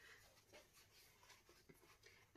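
Near silence, with faint rustling of a paper towel sheet being handled and a few small ticks.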